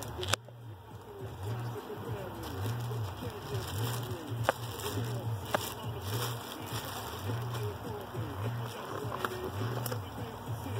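Styrofoam packing tray and plastic wrap being handled, with a few sharp knocks: one just after the start and two around the middle. Under it runs a steady background warble with a low pulse repeating about once a second.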